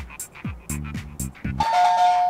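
Electronic countdown music with a steady kick-drum and hi-hat beat, then about a second and a half in a two-note descending 'ding-dong' chime of a quiz answer button as it is pressed to stop the timer.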